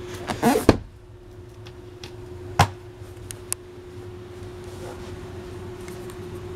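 A boat's under-seat storage lid being shut by hand, with a solid thump about two-thirds of a second in and a lighter click about two and a half seconds in, over a steady low hum.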